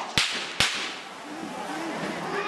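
Two gunshots, sharp cracks less than half a second apart shortly after the start, each trailing off in a brief echo.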